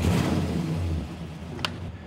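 A 1956 Studebaker Hawk's engine running, heard from inside the cabin, with a louder surge right at the start that eases back after about a second. A single sharp click comes near the end.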